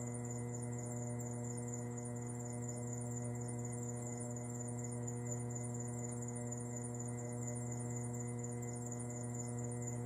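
Electric potter's wheel running steadily while a tall clay form is thrown, with a steady electric hum and a faint quick high ticking at about four or five a second.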